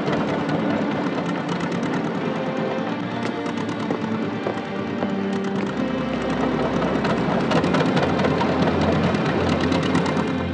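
Background film-score music with many sharp clicks throughout.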